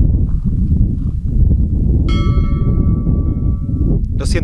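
Strong wind buffeting the microphone with a steady low rumble. About halfway through, a bell-like chime of several clear tones starts and rings on for nearly two seconds.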